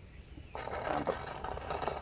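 A bonsai pot scraping across a stone tabletop as it is turned around by hand. The scraping starts about half a second in.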